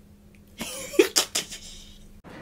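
A man coughing, three quick short coughs about a second in.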